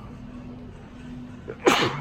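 A person sneezes once near the end: a quick catch of breath, then one loud, short sneeze that falls in pitch.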